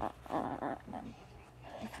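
A sharp click at the start, then a short, breathy laugh muffled by a plastic face mask, and one spoken word near the end.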